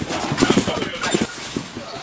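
Dull thuds of a padded person landing on gym mats and crashing into a foam crash mat, with voices around.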